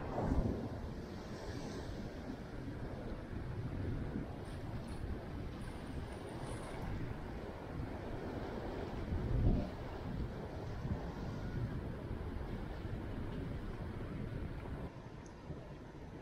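Sea breeze rumbling on the microphone over the wash of sea water below, with a stronger gust about nine seconds in.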